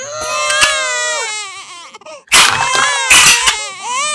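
A high, wavering crying voice wails twice, the first cry lasting about two seconds. Sharp plastic clicks come in with the second cry.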